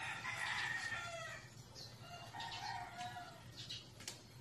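A rooster crowing: two crows in a row, the second lower in pitch.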